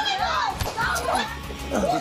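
Several people screaming and shrieking in high, overlapping voices as a scuffle breaks out.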